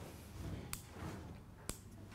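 Quiet room tone with a steady low hum, broken by two faint sharp clicks about a second apart.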